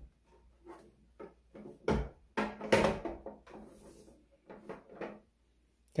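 Plastic parts of a Roomba self-emptying base knocking and clicking as the hose tubing is slid into its slot in the housing by hand: a few scattered knocks, the loudest about two seconds and about three seconds in.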